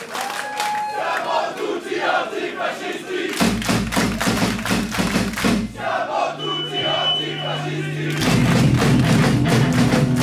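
A crowd of punk fans shouting a chant together over rhythmic hits. The band's instruments come in heavily about three seconds in and again, louder, near the end.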